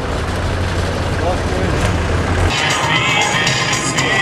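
Street sound with a low rumble of traffic and people talking, which gives way abruptly about two and a half seconds in to music playing amid voices.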